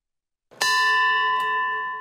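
Silence, then about half a second in a single bell-like chime struck once, ringing on with a slowly fading tone.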